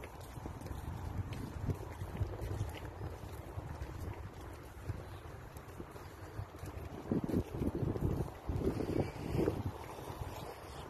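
Wind rumbling on a phone microphone outdoors, with louder, choppier gusts for a couple of seconds near the end.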